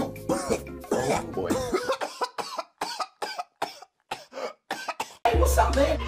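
A man coughs over and over in a long string of short, sharp coughs, over faint music at first. A little over five seconds in, a loud music track with heavy bass starts.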